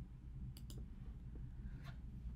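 Three faint clicks from working a computer, two close together about half a second in and one near the end, over a low steady hum.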